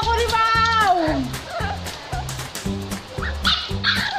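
Puppy whining: one long whine that holds and then falls away about a second in, followed by shorter whimpers near the end. Background music with a steady beat plays throughout.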